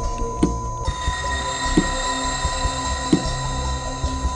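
Suspense background music: a sustained drone with a deep pulse about every second and a half, with a brighter high layer coming in about a second in.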